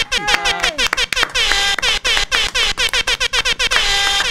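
A music sting of electronic sound effects that starts suddenly: a fast run of sharp clicks, each trailing a short falling pitch sweep, with brief steady horn-like tones mixed in.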